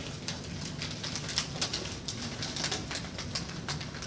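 Sheets of paper rustling and crinkling close to a podium microphone, in short irregular crackles over a low room hum.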